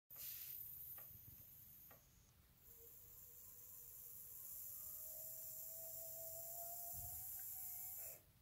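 Faint, thin whine of a tiny electric motor in a home-built 1:87-scale RC Schlüter 5000 TVL tractor model, its pitch rising slowly, with a couple of light clicks near the start.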